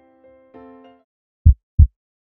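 A soft keyboard chord that stops about a second in, then a heartbeat sound effect: two deep thumps in quick succession near the end, the first lub-dub of a steady beat.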